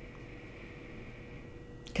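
A woman sniffing a wax melt held to her nose: a faint, long inhale that fades out about one and a half seconds in.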